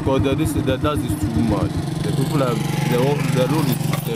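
A motorcycle engine running steadily, an even pulsing hum, with people's voices over it.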